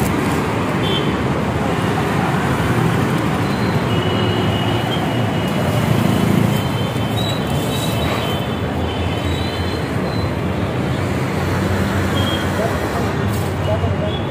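Steady road traffic noise from vehicles running past on a busy city street.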